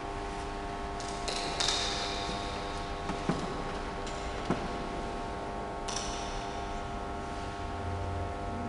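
A steady hum of several held tones, with a few light clicks and knocks. One click about one and a half seconds in rings briefly and high, like metal or glass, and another rings near six seconds.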